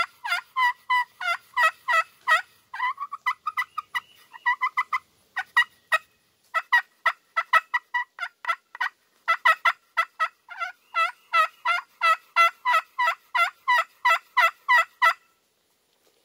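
Quaker Boy Magic Touch glass pot turkey call played with a striker, giving a long run of short yelping notes that step between a higher and a lower pitch, about three a second. The run thins out briefly about five seconds in and stops shortly before the end.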